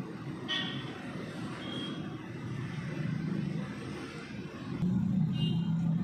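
Low rumble of a motor vehicle engine, growing louder about five seconds in.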